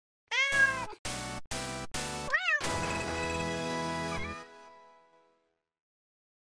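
Intro jingle built around a cat's meow: a meow, four short musical stabs, a second meow, then a held chord that fades away about five seconds in.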